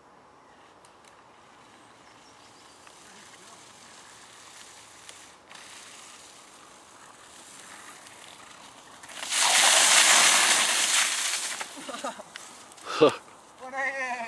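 Mountainboard's pneumatic tyres rolling fast over wet, snow-patched grass as the rider passes close: a loud rushing hiss for about two seconds, after a quiet stretch. A short shout follows near the end.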